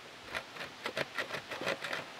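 Metal hive tool scraping softened beeswax and propolis off a wire-mesh screen: a quick run of short, faint scrapes, about five or six a second. The buildup has been soaked in 91% alcohol and comes off easily.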